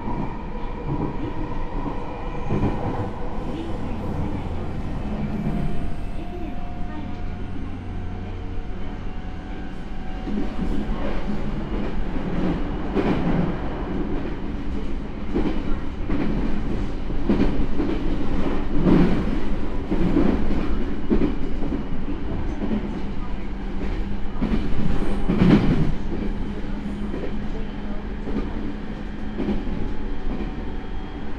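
Inside the motor car of a JR East E217-series electric train, the Mitsubishi IGBT VVVF inverter and MT68 traction motors whine in steady and gently shifting tones as the train pulls away from a platform. As it runs on, the wheels rumble and clatter over rail joints and points, with louder clunks at about 13, 19 and 25 seconds in.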